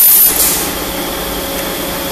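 Paper tube making machine running with a steady mechanical hum. A brief, loud high-pitched hiss at the very start, over in about half a second.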